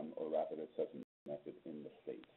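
A man speaking, his voice cutting out completely for a moment about a second in.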